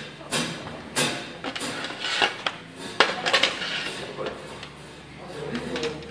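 Scattered sharp hits on a drum kit, the cymbals ringing after some of them, over indistinct audience chatter, as a band gets ready between songs.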